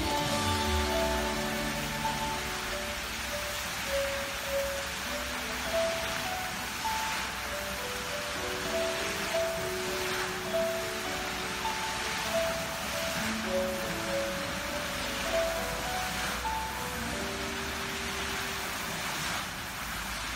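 Musical fountain's water jets spraying and splashing down into the pool as a steady rushing hiss, with a slow melody of single held notes playing along with the show.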